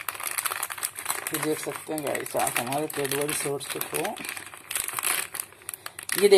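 The crinkly metallised plastic wrapper of a Cadbury Shots chocolate packet crackling and crumpling as it is pulled open by hand.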